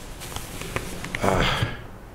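A man sniffing, an audible breath in through the nose, about a second and a half in, with a few faint clicks before it.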